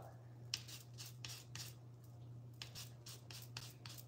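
Calamansi rind being grated over drinks: faint, irregular scraping strokes, about three a second.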